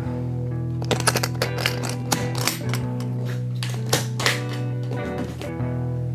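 Background music with held guitar notes runs throughout. Over it, from about one to four and a half seconds in, comes a string of sharp, irregular clicks and knocks: the metal latches of a Gibson hardshell guitar case being snapped open and the case being handled.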